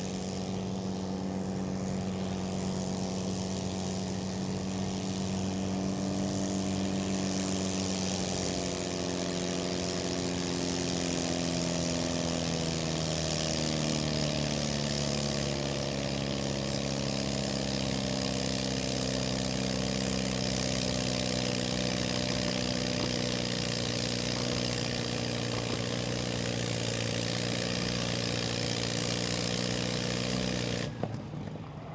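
Antique farm tractor engine running hard under load while dragging a weight-transfer pulling sled. It holds a steady speed at first, then its pitch sinks gradually from about a quarter of the way in to about halfway as it lugs down under the sled's building drag, then runs steady at the lower speed.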